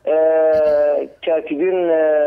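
A man's voice holding a long, level hesitation sound "eee" for about a second, then going back into ordinary speech.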